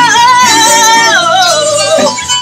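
A woman in a church worship team sings a long, high held note with vibrato over instrumental backing. The note slides down in a few steps through the second half.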